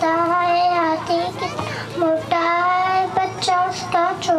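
A child singing a poem in long held notes, each lasting about a second, with short breaks between the phrases.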